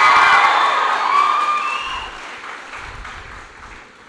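A large audience applauding with some cheering. It is loud at first, then dies away over the few seconds.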